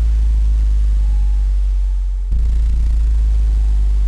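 Deep electronic bass drone with a steady low hum above it. It fades slightly and then comes back sharply at full strength a little over two seconds in, part of a live drum-and-electronics performance.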